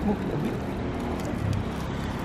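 Steady low rumble of a car engine running nearby, with a few faint crinkles from a plastic snack wrapper being handled.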